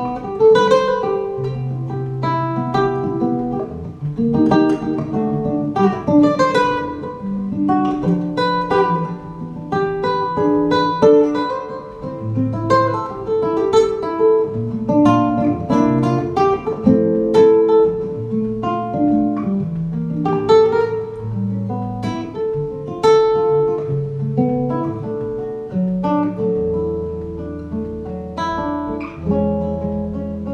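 Godin Multiac Grand Concert Duet Ambiance nylon-string guitar played through an AER Domino 3 acoustic amplifier, heard through a GoPro's built-in microphone. A free improvisation: a steady flow of plucked melody notes and chords over held bass notes.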